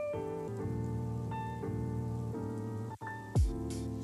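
Background music: held synth chords that change every half second or so, with a brief break about three seconds in followed by a low, falling sweep.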